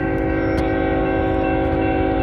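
Locomotive air horn sounding one long, steady blast, a chord of several notes held without a break.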